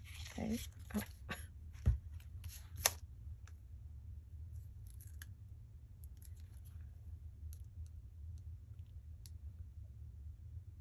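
Small clicks and taps of hand craft work on a cutting mat: a plastic glue bottle and a fine pointed tool handled and set down. The clicks are clustered in the first three seconds, with a louder thump about two seconds in, then sparse faint ticks, over a steady low hum.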